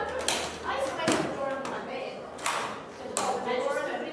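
Four sharp knocks spread over a few seconds, with indistinct voices between them.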